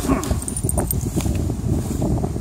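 Wind buffeting a phone microphone with a low rumble, with a few faint high chirps about half a second in.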